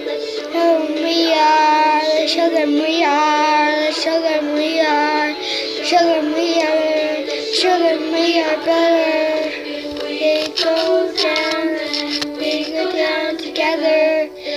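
A young girl singing a pop song over backing music, her voice sliding up and down in pitch and holding notes.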